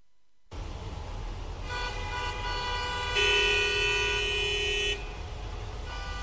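Street traffic sound effect starting abruptly: road rumble with car horns, one horn held for nearly two seconds about three seconds in as the loudest part.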